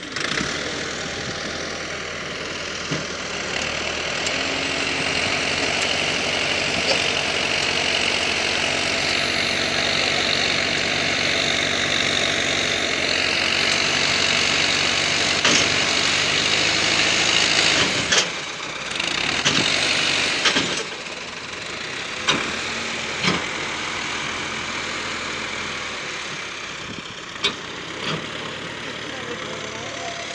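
Massey Ferguson 385 tractor's diesel engine running hard under load as it tries to pull a trolley of wrapped alfalfa bales that is stuck. Several sharp knocks come in the second half.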